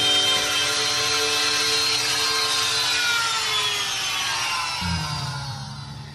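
Handheld electric wood router cutting a rectangular switch-box opening in a wooden wall panel. Its motor whine falls slowly in pitch and winds down near the end, when a low steady hum comes in.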